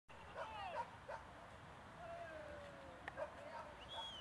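A dog yipping and whining excitedly, with several short high yips in the first second or so and a longer falling whine around the middle.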